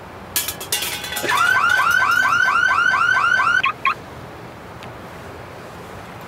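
A quick burst of clicking, then a loud electronic chirping signal: about ten rapid rising chirps, roughly four a second. It cuts off suddenly, followed by one short last chirp.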